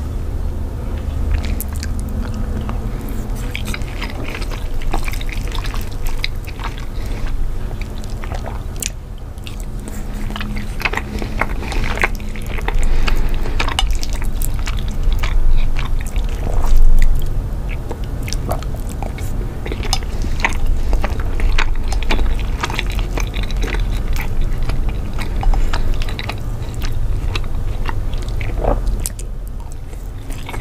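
Close-miked eating: wet chewing and smacking mouth clicks on a soft cheesy dish, irregular and continuous, over a steady low rumble.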